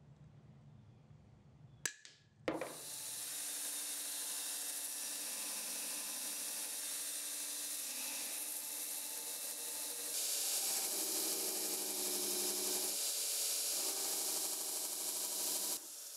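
A single sharp snip of end-cutting nippers clipping a handle pin, then a belt grinder running steadily as the dagger's handle is ground to shape against the belt. The grinding grows a little louder and changes tone about ten seconds in.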